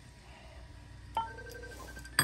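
A single light clink of crystal glassware about a second in, followed by a short ringing tone that fades within a second.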